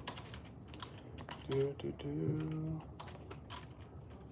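Irregular clicking of keys being typed on a computer keyboard. A voice is briefly heard in the background about a second and a half in.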